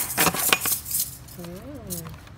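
Black metal sliding door bolt on a wooden board being worked by hand, giving several sharp metallic clicks and clinks, the loudest right at the start. Near the end a short voice sound rises and falls in pitch.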